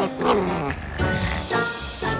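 Cartoon background music with a short, gliding animal-like vocal sound from the cartoon dog in the first half second. About a second in, a steady high hiss sound effect starts suddenly and lasts just under a second.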